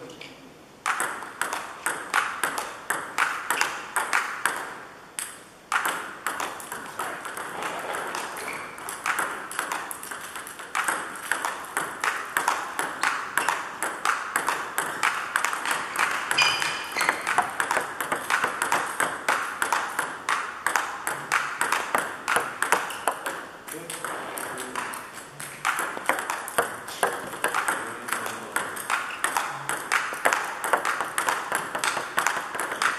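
Table tennis balls clicking in a rapid, steady run of paddle hits and table bounces during a fast multiball-style drill, with a short break about five seconds in.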